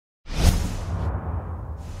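Whoosh sound effect of an animated logo intro. It starts suddenly about a quarter second in with a deep rumble under a rushing swoosh, then carries on as a steady rush that slowly fades.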